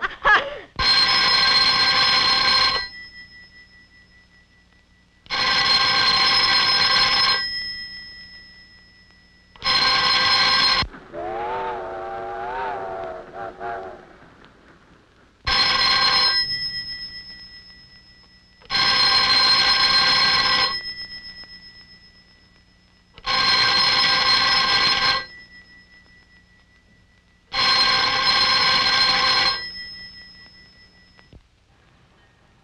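Bell of a black rotary desk telephone ringing unanswered, seven rings of about two seconds each with pauses of two to four seconds, two of them cut short. Between two of the rings a brief wavering pitched tone sounds.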